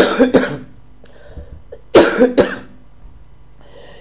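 A man coughing in two short fits about two seconds apart, each a few harsh coughs close to the microphone.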